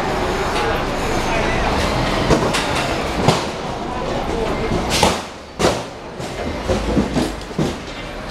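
Busy street ambience: a steady low rumble of traffic and background voices, broken by a series of sharp metallic clanks and knocks, the loudest about five seconds in. These are market stall frames of metal tube poles being handled and fitted together.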